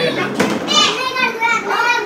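Young children's high-pitched voices chattering and calling out among people talking, with a brief sharp click about half a second in.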